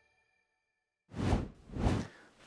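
Silence, then two quick whoosh sound effects about half a second apart in the second half, marking a slide wipe transition.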